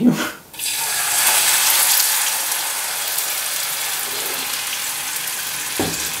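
Tomato sauce sizzling and spitting as it is poured into a very hot frying pan coated with burnt-on sausage bits, a loud steady sizzle that sets in about half a second in and slowly eases. A single knock near the end.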